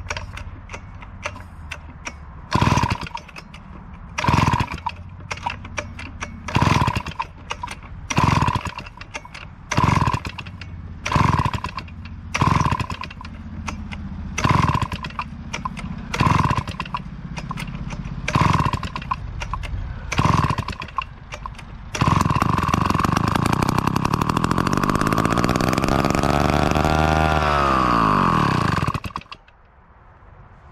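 Old David Bradley two-stroke chainsaw, long stored and primed with fuel poured in, being pull-started: about a dozen short pulls of the recoil starter cord every second or two. About two-thirds of the way through it fires and runs for about seven seconds, revs up briefly, then winds down and dies.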